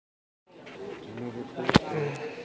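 Retail store ambience: a low background murmur with faint voices, starting after a brief silence, then a single sharp knock near the end.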